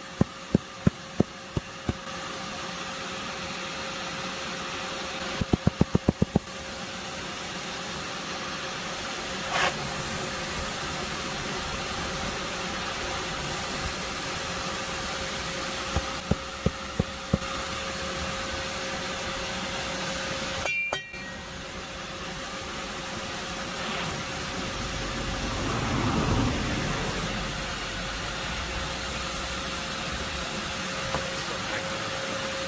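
Vacuum running steadily with a constant hum, its hose nozzle set beside the entrance of an underground yellow jacket nest to suck up the wasps. Three short runs of quick, evenly spaced sharp clicks cut through the running noise.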